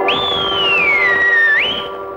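Closing bars of a classic Tamil film song. Over held orchestral chords, a high, pure whistle-like tone slides up, glides slowly downward, then jumps back up near the end.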